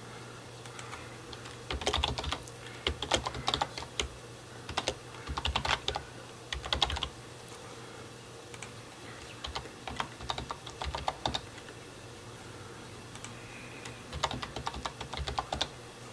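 Typing on a computer keyboard in four short bursts of rapid keystrokes with pauses between, over a faint steady low hum.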